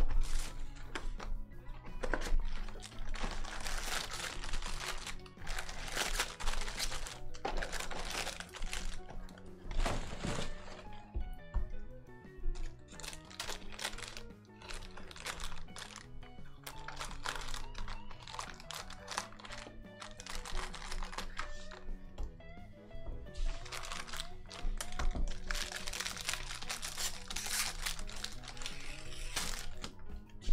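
Background music, with the crackly crinkle of foil trading-card pack wrappers being torn open in two spells, over much of the first ten seconds and again near the end.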